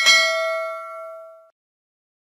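Notification-bell sound effect: a single bright bell ding, struck once, that rings and fades, then cuts off about one and a half seconds in.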